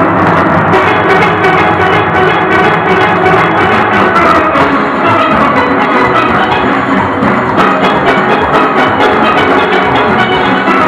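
A full steel orchestra playing: many steelpans ringing out a dense, loud melody and chords over a rhythm section of drums and percussion.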